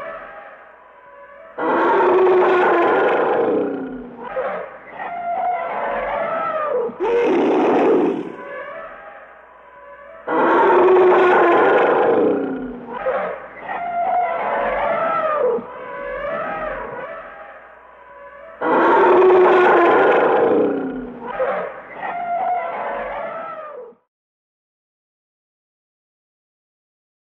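Elephants trumpeting: four loud trumpet blasts several seconds apart, with shorter, lower calls that slide in pitch between them. The calls stop about two seconds before the end.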